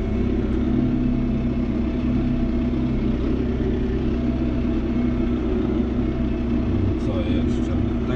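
John Deere 5070M tractor's engine running steadily at low revs, around 1100 rpm, heard from inside the cab while it pulls a sprayer at walking pace. The drone holds one even pitch with no change in speed.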